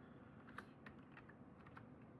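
A few faint, scattered computer keyboard key presses as a mistyped command is retyped and entered.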